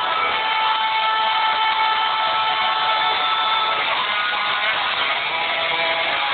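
Rock music with a dense wash of distorted electric guitars under a long held note that ends about four seconds in.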